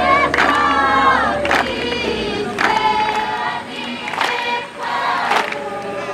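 A group of voices singing together in long held phrases, with a sharp beat, like a clap or drum stroke, about once a second.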